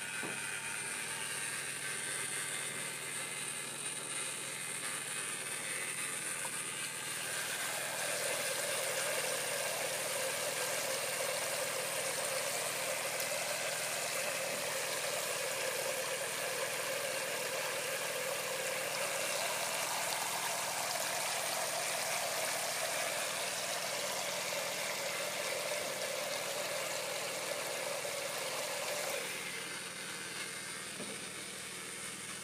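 Steady hiss of water spraying from the shower head of a portable gas water heater into a metal basin, over a constant low hum. The spray gets louder about eight seconds in and drops off just before the end.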